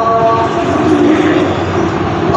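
A man's voice in melodic Quran recitation, holding a long, low note that wavers in pitch, over a steady hiss of room and loudspeaker noise.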